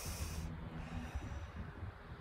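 A person breathing out audibly through the nose, a breath that ends about half a second in, over a steady low rumble of wind on the microphone.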